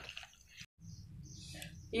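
Faint wet squishing of hands mixing marinated chicken pieces in a plastic bowl, broken off by a moment of dead silence, then low, quiet room tone.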